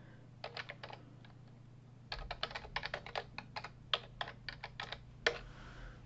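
Typing on a computer keyboard: a few keystrokes, then a quick run of keystrokes lasting about three seconds. A faint steady low hum runs underneath.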